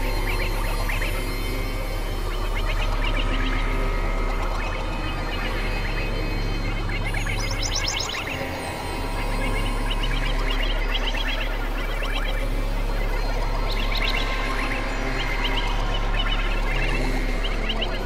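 Experimental electronic synthesizer music: a steady low drone under layered, sustained tones. Bursts of quick, high-pitched chirping figures come about seven seconds in and again about fourteen seconds in, and the level dips briefly just after the first burst.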